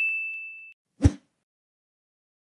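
A notification-bell sound effect: a single bright ding that rings out and fades over the first three-quarters of a second, followed by a short thump about a second in.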